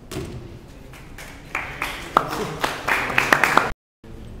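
A 3x3 Rubik's cube being turned fast, its plastic layers clicking. About halfway in, a louder stretch of sharp claps and voices starts and is cut off abruptly just before the end.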